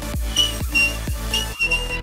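A person whistling with a fingertip held at the lips: four short high whistles, the last held for about half a second, over background electronic music with a steady beat.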